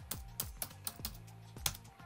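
Typing on a computer keyboard: a quick, uneven run of key clicks as a search term is entered.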